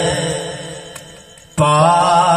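A man singing a naat, an Urdu devotional poem, into a microphone over loudspeakers. A held note fades away over the first second and a half, then the next sung phrase comes in suddenly.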